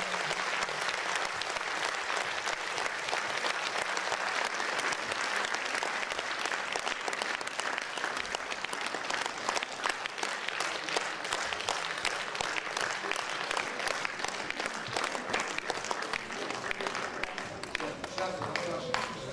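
Audience applauding in a hall: dense clapping that thins to more scattered individual claps near the end.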